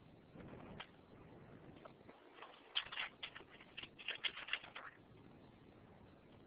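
A quick, irregular run of light clicks, about a dozen packed into two seconds near the middle, over faint room tone.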